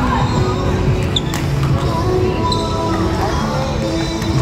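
A couple of sharp slaps of a volleyball on a hard gym court about a second in, over players' voices and music playing in the background.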